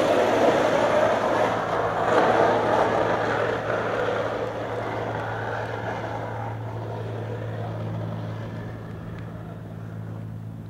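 Skateboard wheels rolling fast on asphalt down a steep street, a continuous rushing roar that slowly fades, with a steady low hum underneath.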